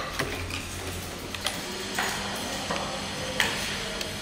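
Scattered light clicks and crackles of plastic-bottle craft pieces being handled, over a steady low hum.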